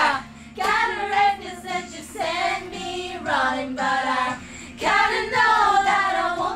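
A woman's voice singing a pop melody in phrases with short breaks between them.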